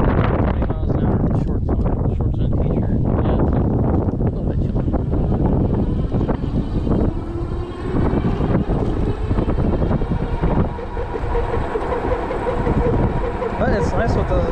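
Wind buffeting the microphone on a moving e-bike. A faint whine from the Juiced Hyperscrambler 2's rear hub motor rises in pitch about halfway through as the bike accelerates from a stop, then holds steady.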